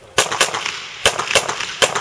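Pistol shots, five in all, fired in quick pairs: two about a quarter second apart, two more about a third of a second apart a second in, then a single shot near the end. This is the double-tap pace of a practical-shooting stage.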